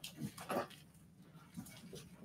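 Two short, faint breaths from the preacher in the first half second, then quiet room tone with a steady low hum.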